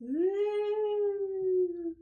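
One long, drawn-out vocal note that swoops up at the start, then is held, sagging slightly in pitch before it cuts off.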